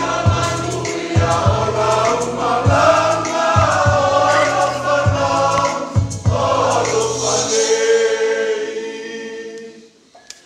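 A congregation singing a hymn in several-part harmony, with a low accompaniment under the voices. Near the end the singers hold a final chord that fades away.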